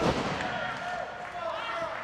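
A thud on the wrestling ring canvas right at the start, then the crowd murmuring, with one voice calling out faintly through the middle.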